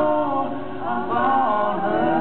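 Live male lead vocal singing a slow country song in close harmony with two female voices, with a brief dip in loudness about half a second in.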